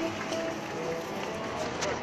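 Street ambience of many voices talking and music playing in the background, with a small child's quick footsteps on cobblestones.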